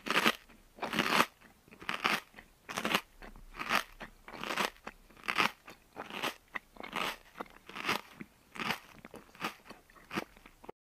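Close-miked chewing by a child, a crisp crunch a little more than once a second with short pauses between.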